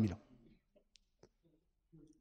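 A man's speaking voice trails off just after the start, then a pause of near silence broken by a few faint, short clicks.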